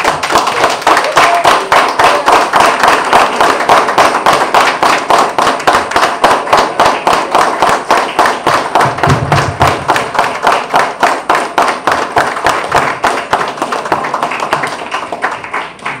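A small group of people applauding, clapping in a steady, even rhythm. It starts abruptly and eases off slightly near the end.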